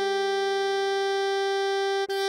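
Synthesized playback of an alto saxophone melody holding one long note (written E5, sounding concert G) over a sustained A-flat major keyboard chord. The note breaks off right at the end before the next one begins.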